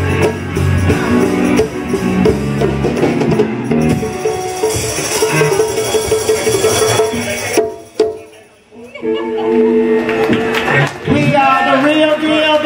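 Live band playing a funk jam with percussion and voices. About eight seconds in the music cuts out briefly, then comes back with long held notes.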